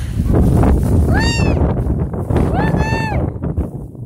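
A young child's voice giving two high-pitched squeals, each rising and falling in pitch, the second longer, about a second and a half apart, over steady low rumbling noise.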